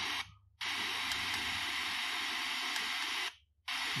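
Softy SBS-10 Bluetooth speaker in FM radio mode playing untuned static, a steady hiss that cuts out briefly twice, about a third of a second in and again near the end. No station is tuned in, so only static plays.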